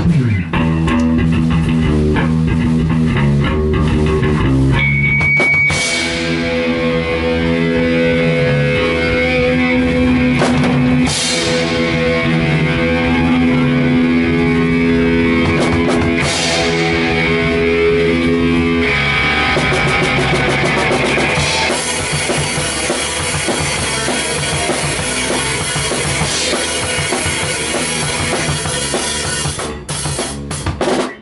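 Hardcore punk band playing: a full drum kit with crash cymbals hit every few seconds under held electric guitar and bass chords, starting at once and stopping right at the end.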